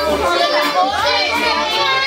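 A young boy's voice talking, high-pitched, with low bass notes underneath.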